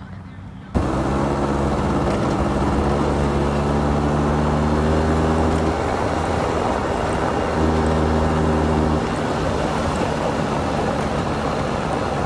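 A motor scooter's small engine running at a steady speed while being ridden, with road and wind noise. It starts abruptly, changes pitch briefly in the middle, then runs steady again.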